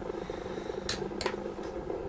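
Two sharp plastic clicks about a second in, then a fainter one, as the cap is pulled off a Shiny 24 mm plastic pocket stamp. A steady low buzz runs underneath.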